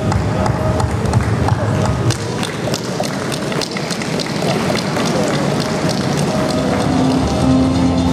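Audience applauding, a dense patter of clapping, with music playing underneath.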